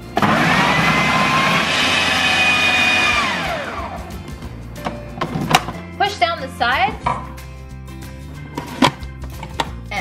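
Kenwood food processor motor starting abruptly and running for about three seconds as it blends soaked cashews into cashew cream, then winding down with a falling whine.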